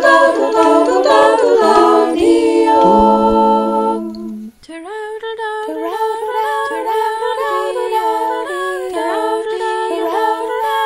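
A small group of women singing a lullaby a cappella in several parts. They hold a chord, break off briefly just before the middle, then carry on more softly.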